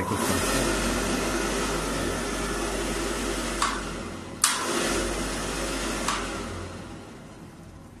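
Fuel-oil boiler burner running: a steady rushing blower noise over a low hum, with a few sharp clicks around the middle. It cuts in at the start, dips for a moment a little past halfway, and dies away over the last couple of seconds.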